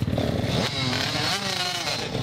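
Motocross bike engine running close by, a steady rapid firing, with a person's voice over it.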